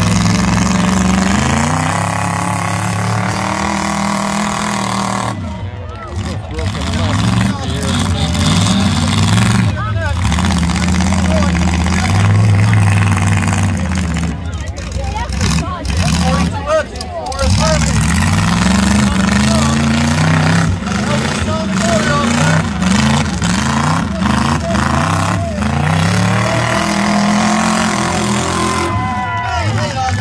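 Several demolition-derby pickup truck engines running and revving together, their pitch repeatedly rising and falling.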